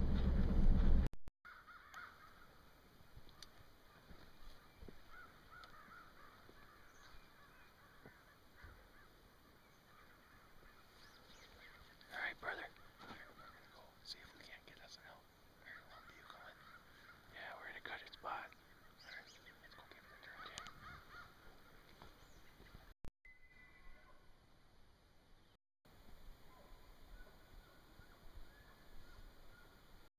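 Faint, distant bull elk bugling: a long, high, wavering call, then several sharper, louder calls through the middle of the stretch.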